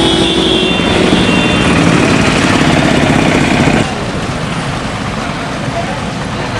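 Road traffic: engines and road noise, with a vehicle horn sounding steadily over it for the first second or two. About four seconds in the sound drops abruptly to a quieter traffic background.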